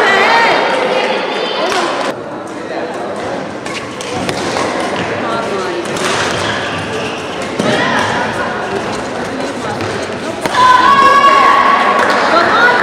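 Badminton doubles play on an indoor court: sharp racket strikes on the shuttlecock and thuds of feet on the court, with players' voices near the start and again louder near the end.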